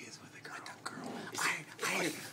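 Only quiet speech and whispering close to the microphone, a little louder in the second half.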